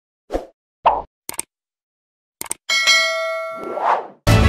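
Editing sound effects on a title card: three short pops, a couple of quick clicks, then a loud ringing metallic ding that fades into a swelling sound at the end.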